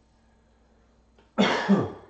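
A person coughing, a loud double cough that starts suddenly about a second and a half in.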